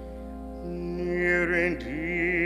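Church organ holding a sustained chord, joined about a second in by a solo cantor singing a hymn with a wavering vibrato.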